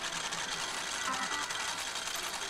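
Pachinko parlor din: a steady, dense mechanical clatter of many machines with electronic jingles mixed in.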